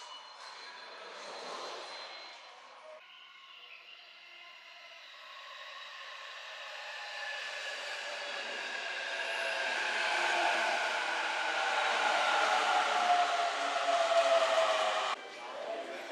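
An electric commuter train on the Joban Line running alongside the platform. Its motor whine slowly falls in pitch as it grows louder, which is typical of a train braking into the station. The sound cuts off suddenly near the end.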